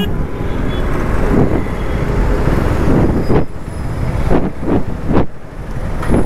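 KTM Duke motorcycle riding through city traffic: engine and road noise, with surrounding traffic, as the bike slows and pulls up to a stop.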